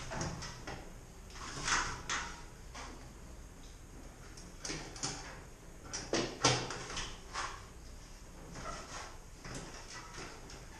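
A mountain bike being handled, giving a handful of sharp mechanical clicks and knocks, the loudest about six and a half seconds in.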